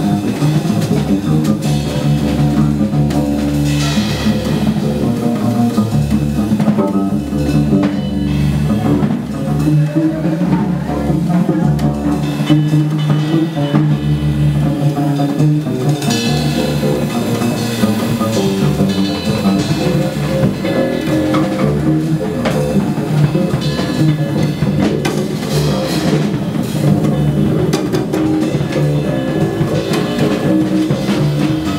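Live upright double bass plucked in a walking line, with a drum kit playing steady time and swelling cymbals.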